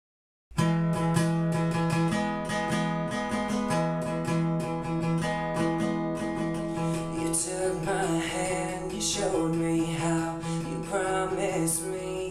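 Acoustic guitar playing the intro of a song, starting suddenly about half a second in and continuing steadily.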